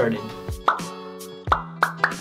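Intro jingle: music over a held low note, with three cartoon 'bloop' pops, each a quick rising blip, coming about 0.7, 1.5 and 1.8 seconds in.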